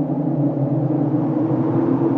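A steady, low synthesized drone with a rumble, several low tones held together and swelling slightly in loudness.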